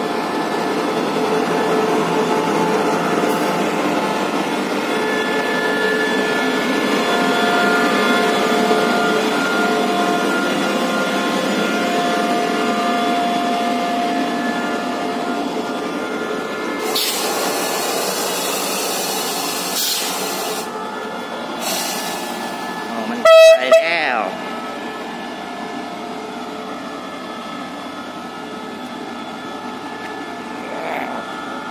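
SRT CDA5B1 "Ultraman" diesel-electric locomotive running close by, a steady engine hum that grows quieter from about halfway. A burst of hissing follows. Then a very loud, short double blast of the locomotive's horn comes about 23 seconds in.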